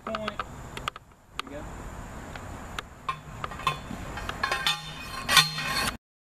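Steel pickets and a post driver being handled on a picket plate: scattered light metallic clinks and knocks, more frequent in the second half, with a louder clank near the end.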